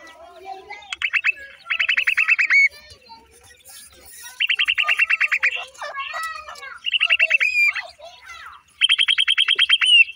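Grey francolins calling: five bouts of rapid trilled chirps, each about a second long, at roughly a dozen notes a second, with short quiet gaps between.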